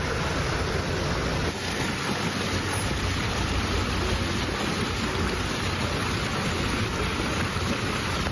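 Steady rushing noise of rain and running floodwater, with a strong low rumble underneath.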